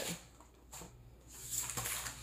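A quiet pause under a low steady hum, with a faint rustle of a paper pattern envelope being handled in the second half.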